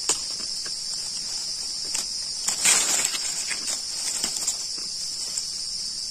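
Steady high-pitched chorus of forest insects such as crickets or cicadas, with scattered small clicks and a brief louder rustle about two and a half seconds in.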